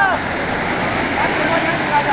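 Surf breaking and washing over the shallows around the men's legs and the net, a steady rushing.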